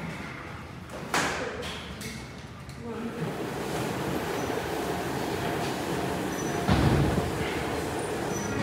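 Gym treadmills running with a steady motor hum under footfalls. There is a sharp knock about a second in and a louder low thump near the end.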